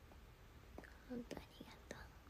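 A young woman's faint whispered murmur beginning about a second in, over quiet room tone, with a couple of small clicks.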